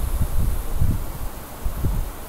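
Low, uneven rumbling noise on the microphone with soft irregular bumps.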